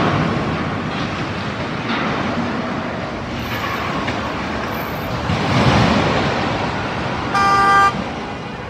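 City street traffic noise, with a car horn sounding one short blast near the end.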